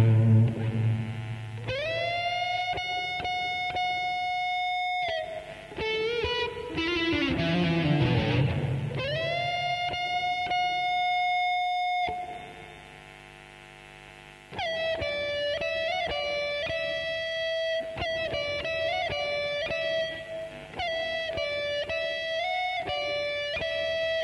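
Electric guitar playing a slow ballad lead melody. Lower falling phrases lead into two long held notes of about three seconds each. A short quiet gap falls a little past the middle, then come quicker runs of shorter notes.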